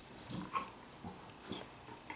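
Black Labrador retriever rolling and wriggling on her back on carpet: a few short, separate noises from the dog and from her body rubbing the carpet.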